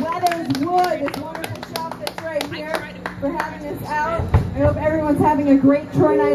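Hands clapping along in a quick rhythm while a voice sings or vocalizes without words in gliding, held notes, with a low thump about four seconds in.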